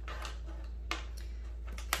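Plastic toy train track pieces clicking and knocking as they are fitted together by hand: a sharp click about a second in and a few more close together near the end.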